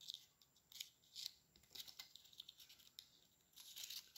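Faint crinkling and rustling of a pleated paper baking cup being worked open between the fingers, in short scattered rustles, a little louder near the end.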